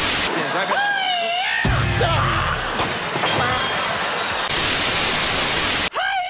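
Television static hiss that cuts off just after the start and returns for the last second and a half. In between, a voice rising and falling in pitch is followed by a sudden crash with a low rumble about two seconds in.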